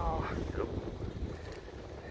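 Wind buffeting the camera microphone as the bicycle rolls along, a steady low rumble, with a brief scrap of voice at the very start.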